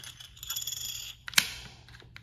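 Plastic game chips, like small poker chips, clinking together in a hand, then a single sharp click about one and a half seconds in as one is set down on the game board.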